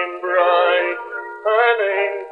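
Male voice singing on a 1902 Edison acoustic recording, the sound thin and narrow, with no deep bass and no high treble.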